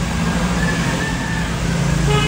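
A motor vehicle engine running steadily nearby, a low even hum over general road noise.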